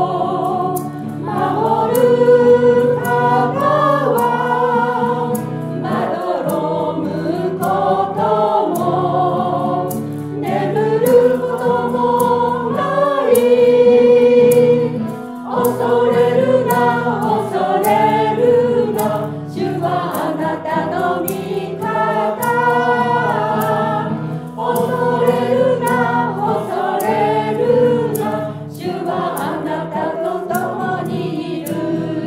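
Small church choir singing a Japanese worship song, accompanied by guitar, with maracas shaken in a steady beat.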